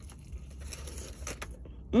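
Biting into and chewing crispy fried chicken close to the microphone: a few soft crunches and crackles over a low steady hum.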